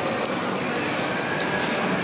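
Shopping-mall ambience: a steady wash of background noise with faint indistinct voices.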